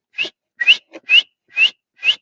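A pencil drawing a line on a lab bench with quick back-and-forth strokes, about two a second, each stroke giving a short rising squeak.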